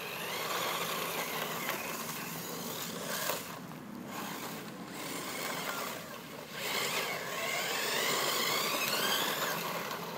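Radio-controlled buggy driven hard on loose gravel: its motor's high whine rises and falls in pitch as it speeds up and slows, loudest in a long rising run near the end, with gravel scattering under the tyres.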